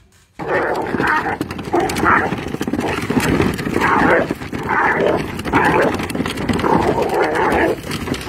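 A dog growling in rough, repeated bursts, about two a second, starting abruptly.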